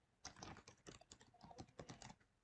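Faint computer keyboard typing: a quick run of about a dozen keystrokes.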